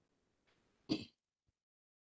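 A man's single brief throat clear about a second in, otherwise near silence.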